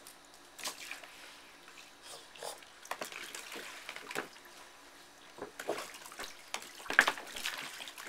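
Water splashing and slopping in a plastic kiddie pool as a Boston terrier steps and paws on its sagging wall, letting water spill out over the edge. Irregular splashes, with the loudest about seven seconds in.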